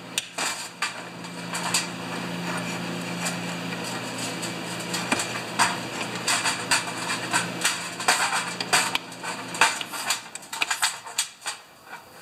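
Sharp clicks and light metallic clatter as a small-engine carburetor is handled in a steel drain pan and a hand pressure-tester pump is worked to pressure-test its fuel inlet. A steady low hum runs underneath and stops about ten seconds in.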